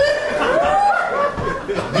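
Laughter following a punchline, in short rising and falling bursts.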